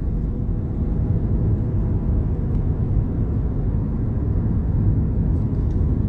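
Steady low rumble of a car heard from inside its cabin, with no sharp events.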